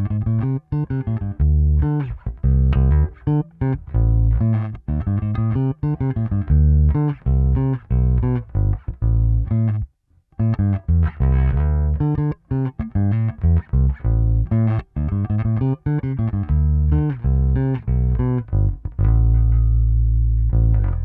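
Harley Benton MV-4MSB short-scale electric bass played fingerstyle with its neck P-style pickup soloed and the tone fully open, recorded direct: a run of plucked notes with a brief pause about halfway, ending on a held low note.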